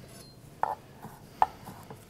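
Chef's knife chopping fresh basil leaves on a wooden cutting board: three separate knocks of the blade on the board.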